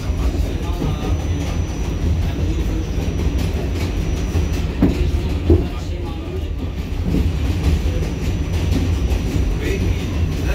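R46 subway car running along the track, heard from inside the car: a steady low rumble with a few sharper knocks from the wheels and rails about five seconds in. A faint high steady whine runs through the first half and stops.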